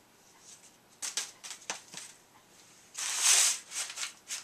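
A comic book being handled and laid on a stack of comics: a few light taps and clicks, then a loud rustling slide of paper about three seconds in, the loudest sound.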